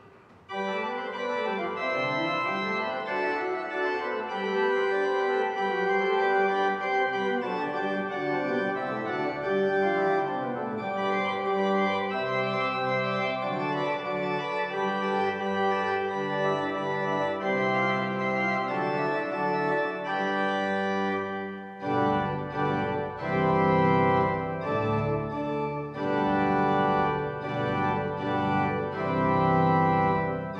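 Pipe organ playing a piece in several voices, starting about half a second in. About 22 seconds in, lower voices join and the sound grows fuller.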